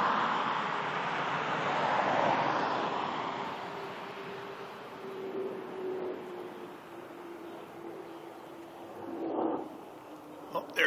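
Fighter jet, taken for an F/A-18, flying overhead: a broad rush of jet engine noise, loudest in the first three seconds and then fading away, with a faint steady tone that slowly sinks in pitch. A brief rush of noise rises and falls near the end.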